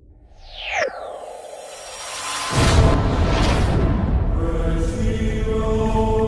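Title-sequence sound effects: a falling whistling swoosh about a second in, then a sudden loud, deep hit at about two and a half seconds that carries on as a sustained noisy swell. Music tones come in over it near the end.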